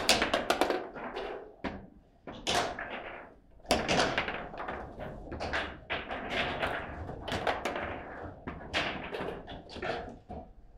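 Table football game in play: quick, irregular knocks and clacks as the ball is struck by the plastic figures and bounces off the table walls. The loudest runs of hits come right at the start and again about four seconds in.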